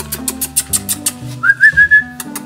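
Background music with a steady bass line and ticking percussion. Near the end, a man whistles a short, high run of notes, a whistle for calling someone over the way one calls a dog.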